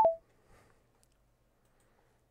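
A sharp click and a short electronic blip that steps down in pitch, right at the start: the AlwaysReddy assistant's cue sound as its Ctrl+Shift+Space hotkey is pressed to end the spoken question. Faint room tone follows.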